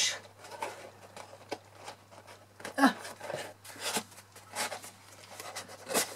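Cardstock rustling and scraping as a large handmade card box is handled and pushed gently into its base, with a few light clicks.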